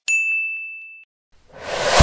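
A single bright bell-like ding sound effect that rings out and fades over about a second, followed near the end by a whoosh that swells louder.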